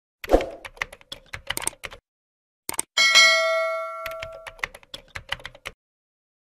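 Subscribe-button animation sound effects: a run of quick sharp clicks like typing or mouse clicks, then a bell ding about three seconds in that rings on for over a second, followed by more clicks.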